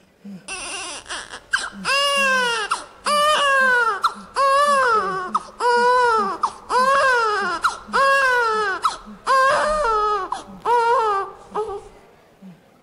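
An infant crying: about ten loud wailing cries, roughly one a second, each rising and then falling in pitch, starting about half a second in. Faint low ticks run underneath at about two a second.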